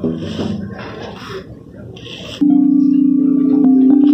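Paddle-struck metal tubes: hollow pitched notes dying away, with a few soft slaps. About two and a half seconds in, a louder stone-slab lithophone struck with mallets cuts in abruptly, its ringing tone sustained and stepping between notes.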